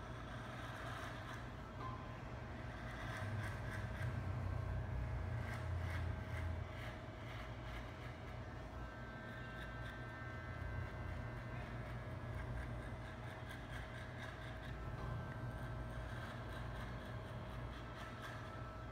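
Corded electric hair clipper running steadily and cutting hair at the side of the head, a constant motor hum with a scratchy edge that grows louder for a few seconds between about three and seven seconds in.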